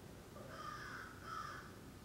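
A bird calling twice in quick succession, faintly, over quiet room tone.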